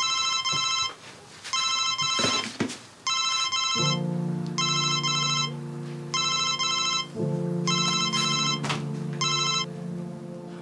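Mobile phone ringtone for an incoming call: an electronic double-beep pattern repeating a little over once a second, about seven times. Low sustained background music chords come in about four seconds in.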